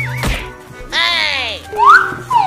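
Slapstick cartoon sound effects: a wobbling warble that ends in a sharp whack, then a falling pitched glide about a second in, and a loud rising glide near the end.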